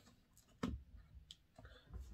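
Faint, scattered clicks and soft knocks from hands moving over a desk with papers and an open book.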